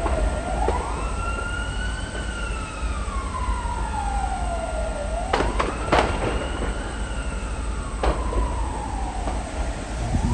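An emergency vehicle siren wailing in slow cycles, rising then falling over about five seconds each. Two sharp cracks come a little past the middle and another about two seconds later, over a steady low rumble.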